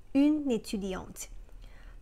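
Only speech: a woman speaks a short phrase lasting about a second, then pauses.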